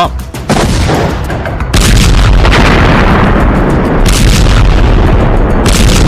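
Bomb explosions: a blast about half a second in, a bigger one just before two seconds that runs on into a continuous heavy rumble, and further blasts about four and nearly six seconds in.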